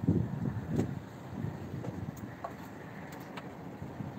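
A road vehicle going by on the street below, heard as a low rumble that swells loudest in the first second and then settles into steady traffic noise.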